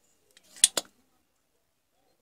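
Two sharp clicks in quick succession, a little over half a second in, from a spring-loaded desoldering pump working solder joints on a monitor power-supply board.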